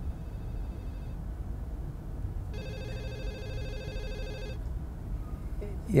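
Telephone ringing with a rapidly pulsing electronic ring: a faint short burst at the start, then a louder ring about two and a half seconds in that lasts about two seconds. It is the sign of a caller's call coming in on the line.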